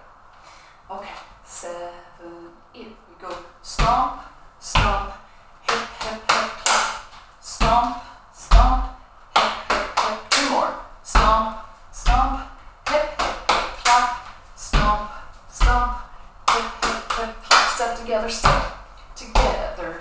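Body percussion: feet stepping and stamping on a wooden floor and hands clapping and patting, in a repeating step-and-clap rhythm with heavy thumps every second or so. A woman's voice calls along with the beat.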